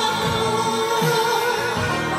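Enka karaoke: a woman singing into a microphone over the song's backing track.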